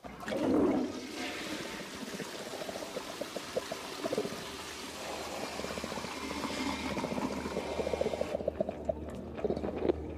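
Rushing, gurgling water, loudest in its first second, running for about eight seconds before its hiss cuts off.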